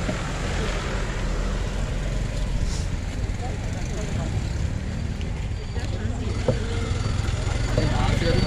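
Busy town street noise: a steady low rumble with faint voices of passers-by.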